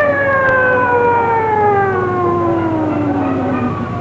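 A siren winding down: one long wail that falls steadily in pitch for about four seconds and fades out just before the end.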